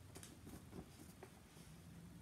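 Near silence: quiet room tone with a few faint, light ticks and rustles from printed paper sheets being handled.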